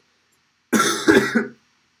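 A man coughing, one harsh burst about a second long, starting just under a second in.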